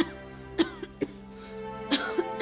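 A person coughing several times in short, sharp fits over steady background music.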